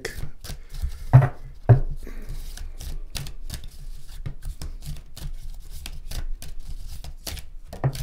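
A deck of Lenormand cards being shuffled overhand by hand: irregular quick card slaps and clicks, two louder ones a little over a second in.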